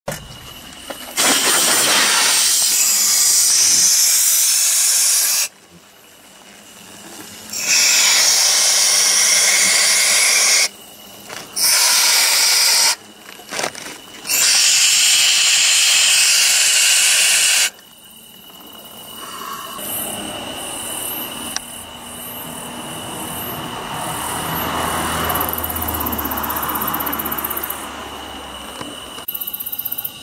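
Aerosol insecticide spray hissing in four bursts of a few seconds each, each starting and cutting off sharply. A quieter, slowly swelling rush of noise follows in the second half.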